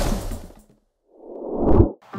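Whoosh sound effects on an animated title card. One dies away in the first half second; after a short silence a second one swells up, rising and growing louder, and cuts off abruptly at the cut to black.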